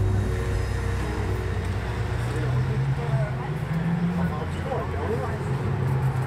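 Street traffic: a steady low rumble of vehicle engines, with people's voices talking in the background.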